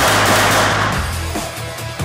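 A volley of pistol shots in the first second, ringing on in the echo of an indoor range, over background music.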